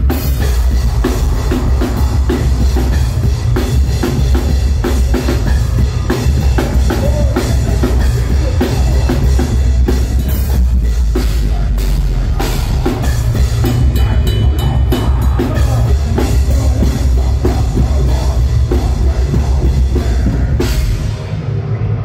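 Deathcore band playing live, with heavy drumming and a pounding kick drum over dense, loud instruments, very heavy in the low end as picked up by a phone in the crowd. The sound briefly drops back near the end.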